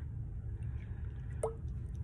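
Water poured from a graduated cylinder into a plastic tub of cornstarch, faint, with one short plop about one and a half seconds in.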